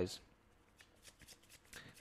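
Faint rustling and a few soft ticks of tarot cards being handled and a card drawn from the deck.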